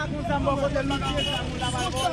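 Several men's voices talking over one another in the street, over a steady low rumble.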